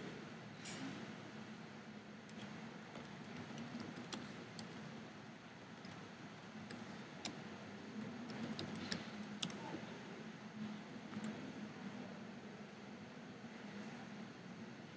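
Faint, irregular clicking of a computer keyboard and mouse as a short label is typed into a diagram, over a low steady room hiss and hum.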